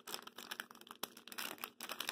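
Wax paper wrapper of a 1987 Topps baseball card pack being peeled open by hand, giving a run of irregular crinkles and crackles.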